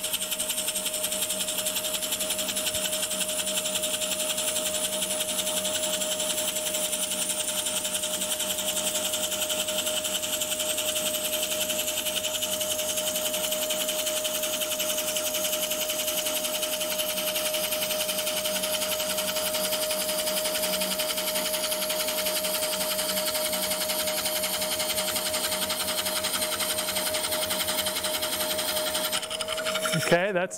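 Straight parting tool cutting a groove into the side grain of a spinning bowl blank on a wood lathe under steady, consistent pressure: an even cutting noise over a steady tone from the running lathe. The sound breaks off just before the end.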